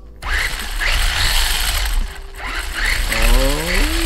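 Traxxas Slash 4x4 RC truck's electric motor and drivetrain revving on the stand with the wheels spinning free, giving a rising whine each time the throttle is pulled over a steady gear noise. The gear noise is what the owner, pretty sure of it, expected from a spur gear that still wobbles slightly after tightening the slipper clutch screws.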